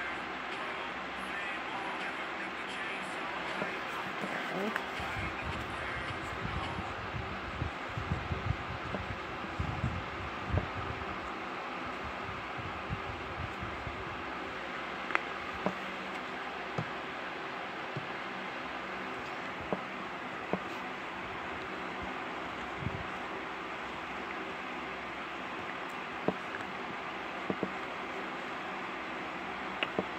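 Rubber-gloved hands handling things close to the microphone: a run of low rubbing thumps in the first third, then scattered light clicks and taps, over a steady background hiss and hum.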